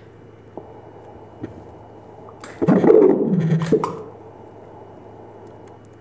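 Ultrasound machine's pulsed-wave Doppler audio playing a single whooshing surge of venous blood flow, about a second long and starting about two and a half seconds in, over a steady low hum. The surge is the flow augmentation from the rapid cuff inflation on the calf, with no reflux elicited.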